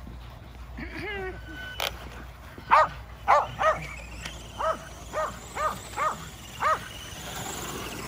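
Kerry Blue Terrier barking: eight sharp barks, a quick run of three about three seconds in, then five more spaced about half a second apart.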